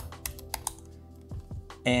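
Computer keyboard keystrokes typing a password: a quick run of clicks in the first second, then a few more, over soft background music.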